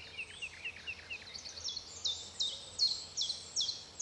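Woodland birdsong: a bird chirping in quick short notes, then a higher song of repeated falling notes, about two a second.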